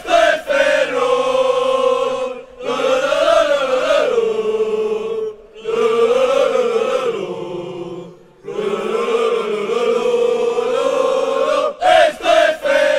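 Outro music of voices chanting together in long, slowly gliding held phrases, about four of them, each a few seconds long with short breaks between.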